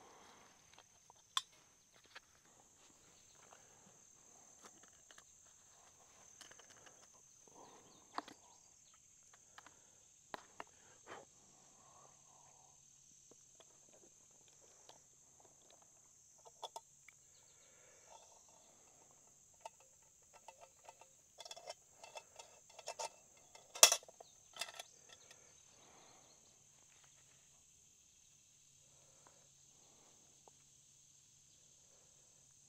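Steady high-pitched chorus of insects such as crickets, with scattered light clicks and clinks of metal camp cookware being handled and food being spooned into a mess tin; a busier run of clatter comes past the middle, with one sharp clack about three quarters of the way in.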